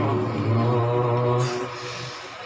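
A male qari's voice reciting the Qur'an in tajweed style, amplified through a microphone, holding one long steady note. The note ends about three-quarters of the way through and fades away.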